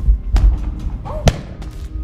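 A taped-up egg-drop package, a styrofoam cup padded with cotton balls and a diaper, is thrown up and lands with dull thuds: two knocks about a second apart, the second the louder.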